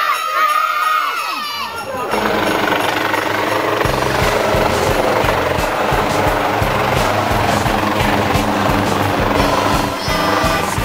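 Children shouting 'Jólasveinn!' for about the first two seconds. Then a helicopter comes in to land: a loud rushing noise, with the rotor's fast, steady low beat starting about four seconds in.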